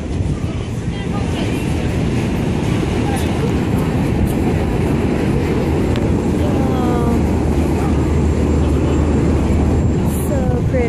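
Wind rushing over the phone's microphone on the deck of a moving boat, over a dense low rumble. A steady low engine hum grows stronger over the last few seconds.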